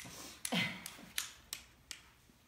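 Scuba diving weight belt being picked up and handled: about five short, sharp clicks and taps spread over two seconds as the webbing, plastic buckle and weights move.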